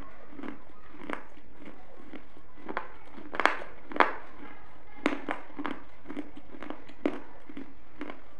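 Close-miked chewing with the mouth closed: irregular wet clicks and smacks, about two a second, the loudest a little past three seconds and at four seconds in.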